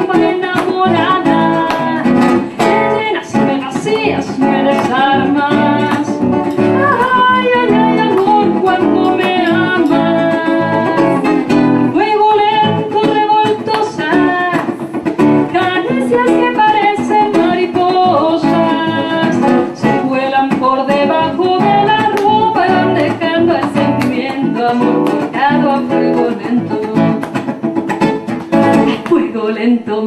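Nylon-string classical guitar played fingerstyle, plucked and strummed, with a woman's singing voice over it at times. The music runs without a break.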